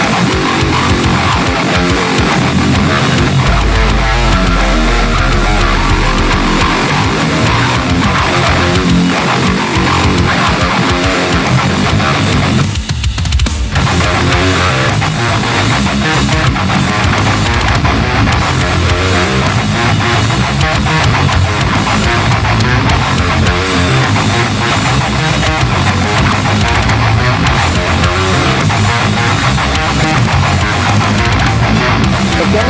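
Eight-string electric guitar (Jackson X Series Dinky DKAF8) tuned to drop F, playing a heavily distorted heavy metal riff on the low strings. About 13 seconds in the sound briefly thins out for a moment before the riff carries on.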